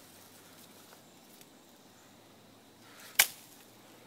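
Faint outdoor background with one sharp snap about three seconds in, and a few much softer ticks.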